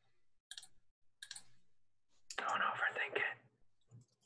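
A person's faint, unintelligible voice in short hissy snatches, with a louder breathy stretch of about a second around the middle.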